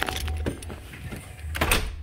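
A house front door being pushed open just after it was unlocked with a key: a sharp latch click at the start and a louder knock about three-quarters of the way through, over a low rumble.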